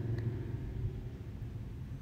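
Quiet room tone: a steady low hum under a faint hiss, with one faint click shortly after the start.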